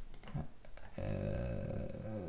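A man's long, drawn-out hesitation "uh", held at one steady pitch from about a second in. It comes after a few faint computer-keyboard clicks.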